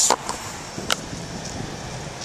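A single sharp click about a second in, over steady outdoor background noise.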